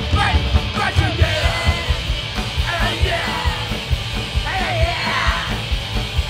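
Punk rock band playing live: distorted electric guitars and bass over fast, steady drums, with a singer shouting into the microphone.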